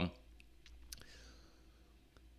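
A few faint computer mouse clicks within the first second, then near silence.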